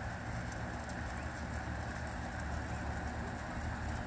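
Steady low rumble with an even hiss over it, with no distinct event standing out.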